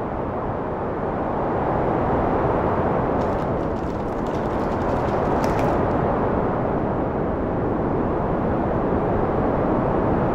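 Steady rushing roar of storm wind, a tornado sound effect, swelling a little about two seconds in.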